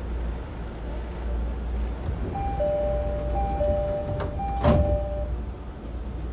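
Door-closing chime and sliding doors of a JR 209 series 500 commuter car: a two-tone high-low chime repeats three times from about two seconds in, and the doors shut with a loud thud near the end of the chime, over the car's steady low hum.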